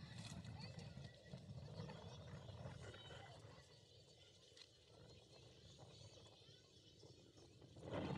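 Near silence: faint distant voices, fading further about halfway through.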